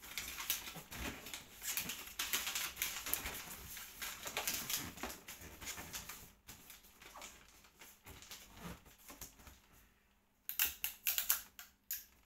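Wrapping paper crinkling and rustling as it is folded and pressed around a large box, dense for the first half and sparser after, with a short burst of loud, sharp crinkles near the end.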